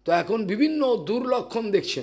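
Only speech: a man talking steadily into a microphone.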